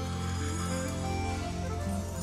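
Live forró band playing an instrumental passage without vocals: held chords over a steady bass line.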